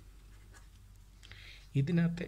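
Felt-tip marker writing on paper: faint scratching strokes, clearest about a second and a half in. A man's voice starts just before the end.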